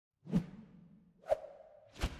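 Two whoosh sound effects about a second apart, each rising quickly to a sharp peak and trailing off, as part of an animated logo intro.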